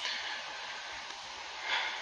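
Steady hiss of room tone, with one short breath through the nose near the end.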